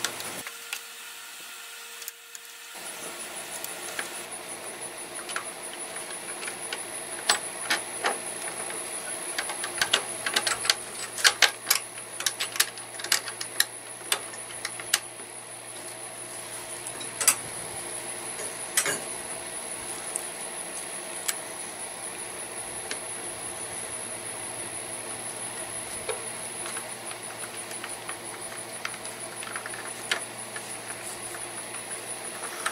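Hand tools clinking and clicking against the metal of a riding mower's carburetor mounting as a bolt is worked into place. Sharp clicks come in a cluster through the first half, with a few more scattered later, over a steady thin high whine.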